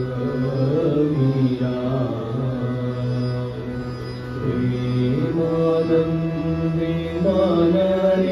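Men singing a Hindu devotional bhajan to harmonium accompaniment, with the harmonium's steady held notes sounding under the voices. A new sung phrase comes in about halfway.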